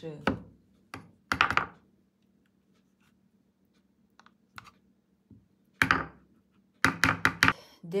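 Tablespoon knocking against its container while aloe vera gel is scooped out and added, in several groups of sharp taps, the loudest about a second and a half in and a quick run of four or five near the end.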